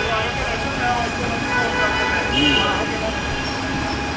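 Busy street ambience: background voices of people talking nearby over a steady hum of traffic and street noise.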